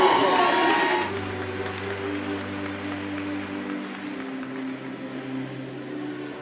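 Crowd cheering and shouting in a large hall, cut off about a second in by music with long held notes over a low bass line.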